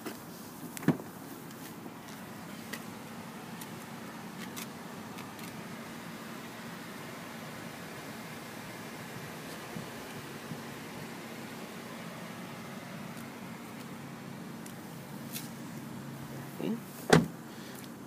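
A car door of a 2007 BMW 530xi latching open with a click about a second in. After that comes a quiet steady background hum, and shortly before the end the door is shut with a single loud thump.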